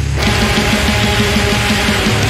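A sludgy, death-tinged post-metal band recording playing loud: heavily distorted guitars, a deep dirty bass tone and natural-sounding drums with rattly cymbals. After a brief break in the low end at the very start, the riff comes back in with a fast, evenly repeated pattern.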